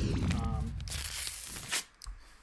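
Rustling, rubbing handling noise: a low rumble at the start, then a louder scraping hiss about a second in that stops just before the end. A brief vocal sound is heard near the start.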